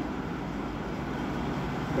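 Steady background noise with no speech: an even, patternless rumble, strongest at the low end.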